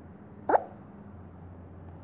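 A single short rising 'bloop' sound effect from a tablet colouring app, about half a second in.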